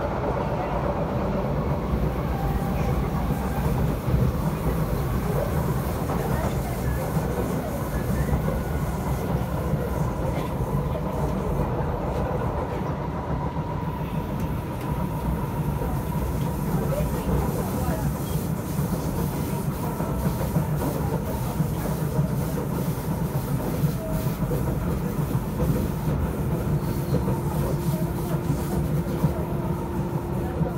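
SMRT C751B metro train heard from inside the carriage while running at speed: a steady rumble of wheels on the track with a faint steady whine over it, joined near the end by a second, lower steady tone.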